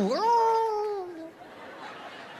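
A man's drawn-out, high "ooooh" vocalisation, a ventriloquist's voice, that dips, rises and then slides down, fading after about a second. Faint audience noise follows.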